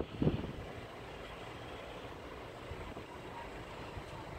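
Steady low outdoor rumble of distant traffic, with a brief low bump just after the start.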